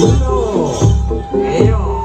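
Jaranan dance accompaniment music: a low drum beat about every 0.8 s under short repeated melodic notes and a long held high note, with some gliding pitches in the middle.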